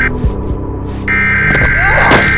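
Horror-film sound design: a low, steady droning hum, broken by a harsh, buzzing blast that cuts out at the start and comes back about a second in. Short squealing glides and a sharp hit come near the end.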